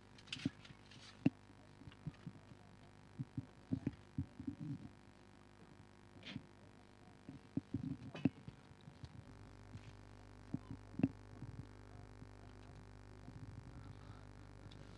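Irregular soft knocks and thumps, some in quick clusters, over a faint steady hum that gets a little louder about nine seconds in.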